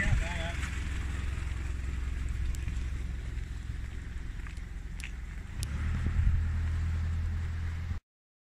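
Low, steady engine rumble of a police vehicle running close by, swelling louder about six seconds in.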